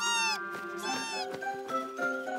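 Two short, high-pitched cartoon cries, each rising and then falling in pitch, over background music.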